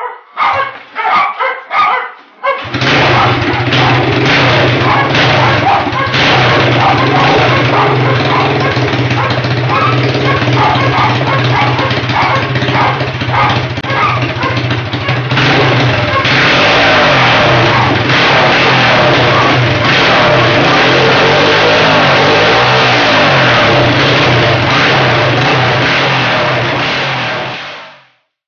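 Freshly rebuilt 110 cc four-stroke single (152FMI) engine of an FMB 139 cross motorcycle starting after a few short sputters, then running steadily. From about halfway it is revved up and down repeatedly until the sound cuts off suddenly at the end.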